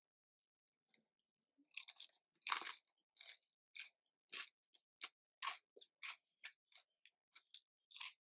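A person chewing crispy fried chicken close to the microphone: a run of short crunches, about two a second, starting a little under two seconds in, the loudest one soon after.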